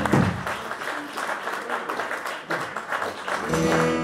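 Audience applauding in a room as the band's final chord dies away at the end of a live blues song. Near the end, a steady held pitched note with overtones comes in over the clapping.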